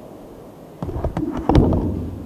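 Microphone handling noise: a run of knocks and bumps, starting about a second in and loudest just past halfway, as a handheld microphone is pushed in and set down among the other microphones.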